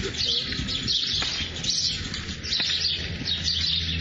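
Many small birds chirping, a dense continual twittering, with a low steady hum under it in the second half.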